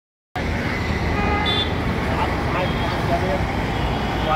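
Outdoor street ambience: a steady wash of road traffic noise with indistinct voices, and a brief high tone about a second and a half in.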